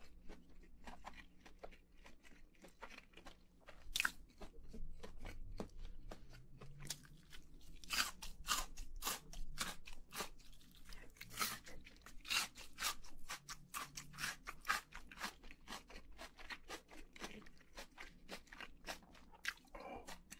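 Close-up eating sounds of crispy fried chicken and pickled radish being chewed: rapid, irregular crunches throughout, loudest and densest in the middle stretch.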